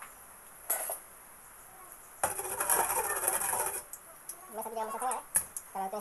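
Metal kitchen utensils clattering: a steel ladle is handled and set down on a plate beside the stove. There is a short rattle about a second in, a louder clattering stretch of about a second and a half from about two seconds in, and a sharp click near the end.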